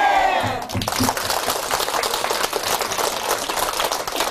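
The tail of a crowd's shouted 'Amen', falling in pitch, then an audience clapping for the rest.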